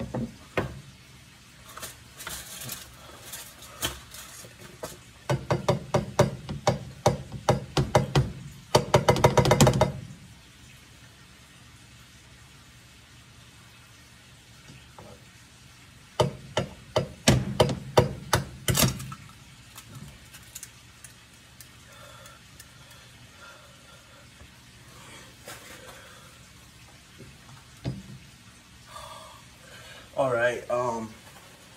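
A kitchen utensil knocking and clinking rapidly against dishware, as in stirring or beating, in two runs: a longer one that speeds up near its end, and a shorter one a few seconds later.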